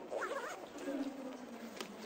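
A person's voice making wordless sounds: a short cry that bends up and down, then a long low hum held for about a second. A sharp click comes near the end.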